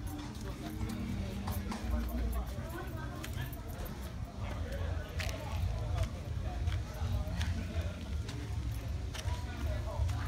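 Footsteps of someone walking, first on concrete and then on dirt, as irregular sharp steps over a steady low rumble.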